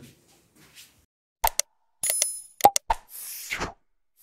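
Outro animation sound effects: two short pops about a second and a half in, a bright ringing ding at two seconds, two more pops, then a whoosh near the end.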